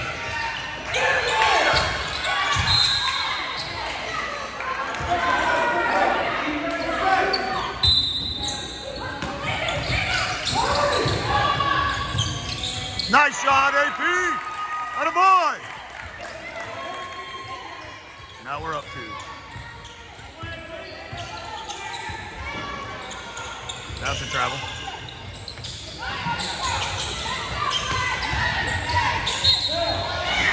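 Basketball game sounds in a large gym: a ball bouncing on the hardwood, sneakers squeaking in a cluster about halfway through, and players and spectators calling out indistinctly.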